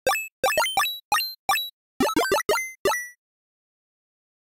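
Chiptune blips from the Sytrus synthesizer in FL Studio: about eleven short, buzzy tones at different pitches in a quick, uneven rhythm. Each jumps upward in pitch at its start and dies away almost at once.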